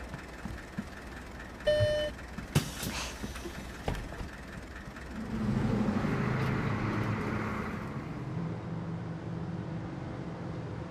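A bus at a stop: a short beep about two seconds in and a few knocks, then about five seconds in its engine drone rises with a hiss as the bus pulls away, settling into a steady run.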